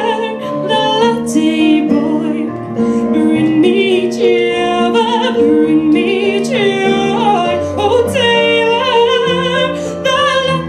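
A woman singing solo into a microphone, a continuous melody with held notes that waver, over steady sustained accompaniment chords.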